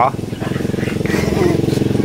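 Small motorcycle engine running steadily, with a rapid even pulse.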